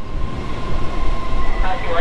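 Electric multiple-unit passenger train running alongside the platform: a steady rumble that grows louder, with a thin high steady hum over it.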